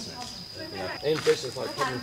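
Quiet voices talking from about a second in, over a faint, steady high-pitched whine.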